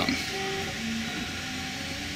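A 3D printer's stepper motors whining in the background: a string of short steady tones that jump from one pitch to another as the printer moves, over a low hum.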